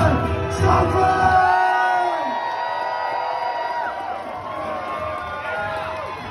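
Crowd cheering and whooping over music playing in the hall. The shouts are loudest in the first second or two, and the level eases off after that.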